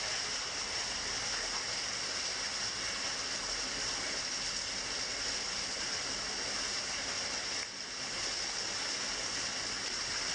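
A small waterfall splashing down wet rock in a narrow stone cleft, a steady rush of falling water. The sound drops out briefly just before the eight-second mark, then resumes.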